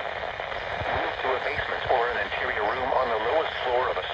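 Synthesized National Weather Service voice reading a tornado warning's take-cover instructions, heard through a Midland weather radio's small speaker.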